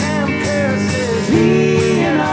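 A small band playing live: strummed acoustic guitar under a sung melody, with one long held note in the second half.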